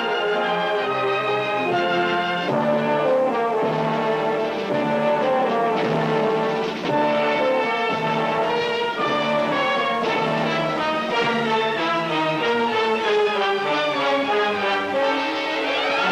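Orchestral closing theme music, brass to the fore, playing a melody of held notes that step from one to the next. A rising sweep comes near the end.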